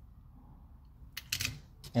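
A few sharp clicks and a short clatter of small die-cast toy cars being handled, a cluster a little over a second in and another just before the end.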